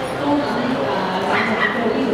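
A small dog yipping briefly about one and a half seconds in, over the chatter of a hall crowd.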